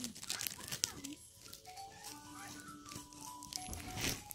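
A shiny plastic wrapper crinkling in the first second or so, then a simple tune of held notes playing in the background.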